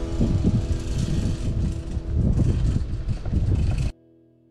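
Wind buffeting the microphone of a camera riding an open chairlift, an uneven low rumble. Guitar music fades out in the first second, and the sound cuts off suddenly near the end.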